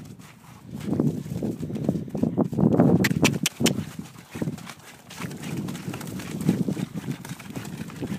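A palomino Quarter Horse mare's hooves trotting through mud, slush and crusted snow in an uneven patter, with a few sharp clicks just after three seconds in.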